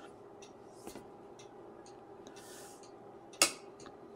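Tektronix 475 oscilloscope's rotary TIME/DIV switch clicking through its detents: a series of faint clicks about every half second, then one louder click a little before the end.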